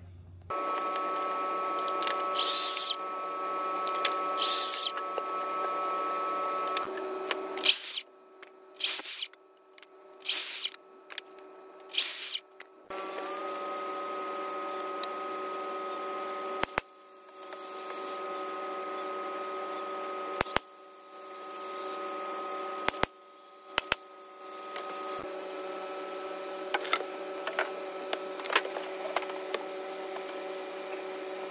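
Woodworking power tools running in a series of short clips: a steady motor whine that switches abruptly between clips, with several brief, louder bursts of cutting in the first half and a few sharp knocks.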